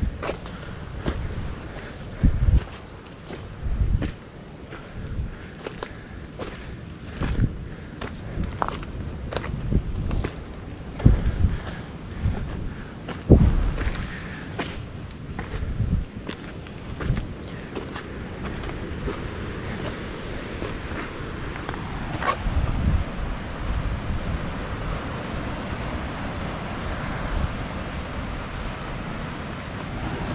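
A hiker's footsteps on a dirt trail covered in dry leaves and stones: irregular low thuds with crunches and clicks, about one a second. In the second half a steady rushing noise builds up under the steps.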